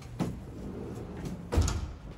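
Two dull knocks from the open rear door of a van, a small one just after the start and a louder, deeper one near the end, over a low background rumble.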